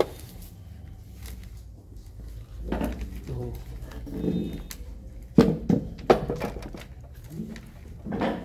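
A checkers piece set down on the board with a sharp click at the start, then a few loud knocks on the table a little past the middle, with low voices in the room between.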